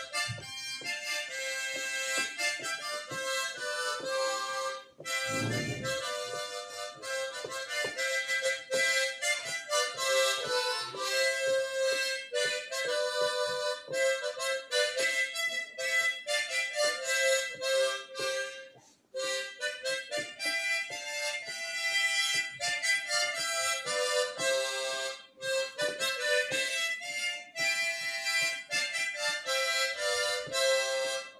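A harmonica played solo: a melody of quick notes and chords, with a short break in the phrasing about nineteen seconds in.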